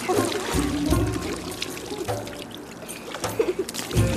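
Water poured from a clay jug over a child's head, trickling and splashing down, with background music.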